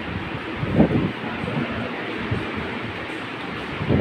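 Steady, even background noise, with a short indistinct voice-like sound about a second in and another near the end.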